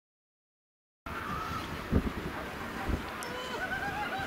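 Silence for about the first second, then outdoor wind noise starts abruptly, buffeting the microphone with a couple of low thumps, and with faint calls or voices in the distance.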